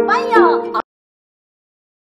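Korean traditional music: plucked gayageum strings under a melody line that slides up and down in pitch. It cuts off abruptly less than a second in.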